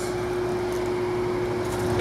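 A steady mechanical hum with one constant tone and a low drone beneath it, unchanging throughout.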